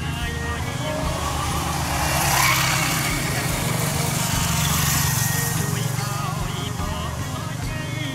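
A motorbike passing close by, its engine and tyre noise swelling to a peak a couple of seconds in and then fading, with voices faintly in the background.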